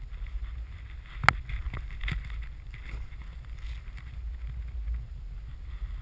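Snowboard riding through deep powder, a steady low rumble with a faint hiss of snow spraying over the camera. One sharp knock comes a little over a second in, with two fainter ones after.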